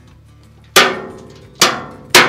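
Two sharp knocks on a steel electrical enclosure door, about a second apart, as a circuit breaker is pressed home in its cutout. Each knock rings out briefly in the sheet metal.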